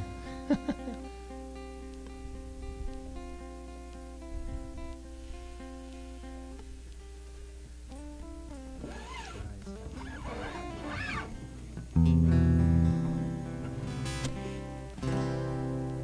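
Quiet guitar music: a slow run of sustained plucked notes, getting louder about twelve seconds in.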